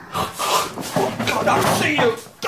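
A voice making breathy, whispered speech sounds, with a noisy breath near the end.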